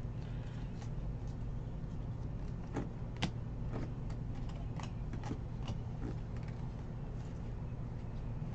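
Trading cards being flipped through by hand: soft irregular clicks and slides of card stock, a sharper snap about three seconds in, over a steady low hum.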